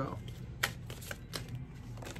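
A tarot deck being shuffled by hand, the cards sliding and slapping together with several short, sharp clicks.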